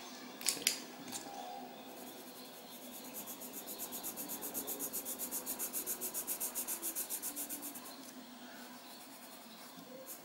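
Pink coloured pencil scratching back and forth on paper while colouring in a small area. The strokes are quick and evenly paced, about six a second, growing louder from about three seconds in and fading out near eight seconds.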